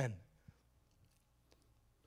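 A man's spoken word through a microphone trails off, then a pause of near silence broken by three faint clicks about half a second apart.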